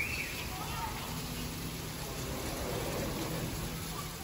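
Rain pouring down steadily on palm leaves, lawn and pavement, an even hiss.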